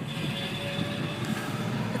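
Car engine idling, heard from inside the cabin as a steady low hum with a faint high whine.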